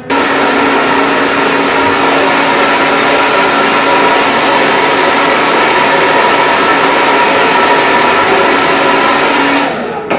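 Handheld hair dryer running at one steady setting, blowing over wet hair. It switches on right at the start and cuts off suddenly near the end.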